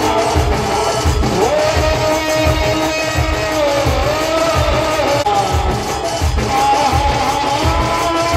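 Jas geet devotional folk music: a steady, heavy drum beat under a held melody line that slides up in pitch about a second and a half in.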